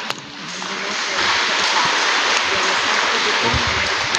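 Audience applauding, swelling up within the first second and holding steady, with a sharp click at the very start.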